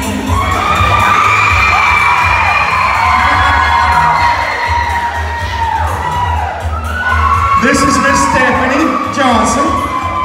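Audience cheering, whooping and screaming over music playing through loudspeakers with a recurring bass line; the shouting swells again a little after the middle.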